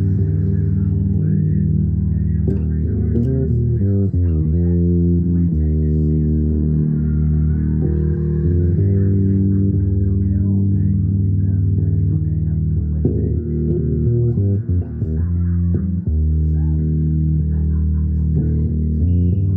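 Fretless electric bass played fingerstyle: an unaccompanied improvised line of low, sustained notes, with sliding glides between some of them a few seconds in and again near the end.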